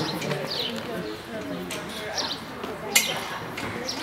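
Indistinct voices in the background, with a small bird chirping in short falling notes a couple of times and a few sharp clicks, the loudest about three seconds in.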